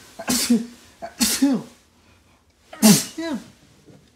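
A person sneezing three times in quick succession, each sneeze a sharp burst with a falling voiced tail; the last one, near the end, is the loudest.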